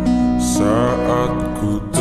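A pop song slowed down and drenched in reverb, with strummed acoustic guitar; the music dips briefly just before the end.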